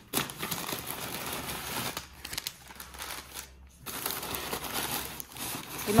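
Packaging crinkling and rustling as a purchased item is unwrapped by hand, irregular, with brief pauses about two and three and a half seconds in.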